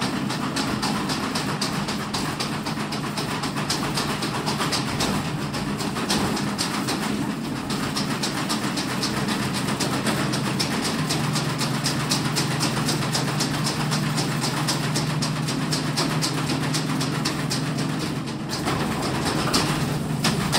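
A vehicle running, heard from inside: a steady low engine hum with fast, even rattling clicks several times a second. The hum shifts in pitch about halfway through.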